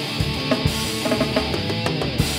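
Live rock band playing: electric guitars, bass guitar and drum kit, with drum hits about twice a second.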